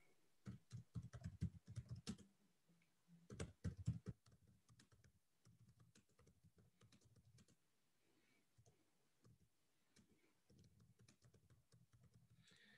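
Typing on a computer keyboard: a quick run of quiet key clicks over the first four seconds, then fainter, sparser clicks.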